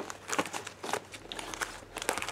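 Clear plastic comic book bags crinkling and rubbing as bagged comics are flipped through in a cardboard long box: a scatter of light ticks and rustles.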